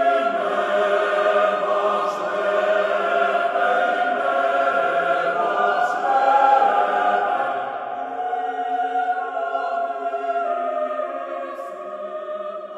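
Choir singing Bulgarian Orthodox liturgical music a cappella in long held chords, a little softer in the last few seconds.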